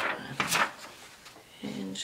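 Paper and packaging rustling as box contents are handled, in a few short bursts, the loudest about half a second in.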